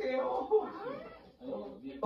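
Voices from a Korean variety-show clip played back through the reaction video, in short sliding phrases. They fade away about halfway through and return faintly near the end.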